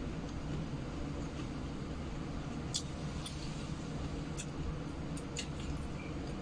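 Someone eating at a table: a handful of short, sharp clicks and smacks of mouth and utensils from near the middle onward, over a steady low background hum.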